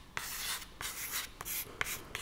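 Chalk writing on a chalkboard: a run of short scratchy strokes as a word is written out letter by letter.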